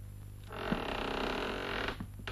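A wooden door creaking as it swings, one creak of about a second and a half that starts and stops abruptly, over a steady low hum.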